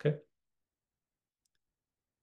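Dead silence after a spoken word ends, broken only by one faint click about halfway through.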